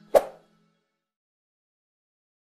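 The last low notes of fading background music, with a single short, sharp hit a fraction of a second in.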